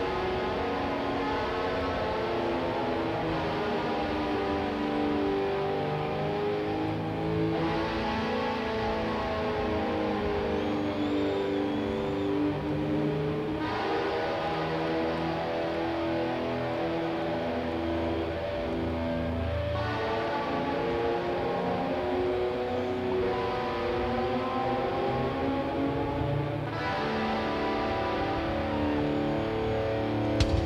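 Rock band playing live, a slow instrumental introduction with no vocals: sustained electric guitar chords that change about every six seconds.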